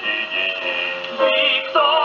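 Portable wind-up acoustic gramophone playing a 1930 78 rpm shellac record: a dance-band passage with no sung words, in the narrow-range tone of acoustic playback. Held notes give way about a second and a half in to a new wavering melody line.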